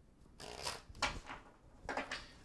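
A tarot deck being shuffled by hand: cards rustling and slapping together in several short runs.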